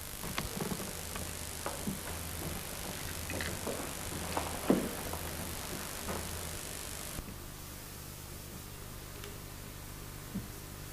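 Steady hiss and low hum with scattered clicks and knocks, the loudest about five seconds in. The hiss and hum drop away suddenly about seven seconds in.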